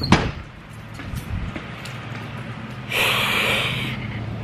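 A door banging with one sharp knock right at the start, then a low steady hum and a burst of hissing noise about three seconds in.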